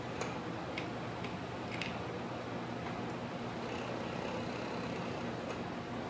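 A few faint, light clicks of small plastic sample tubes being handled and set down, several in the first two seconds and one near the end, over a steady low room hum.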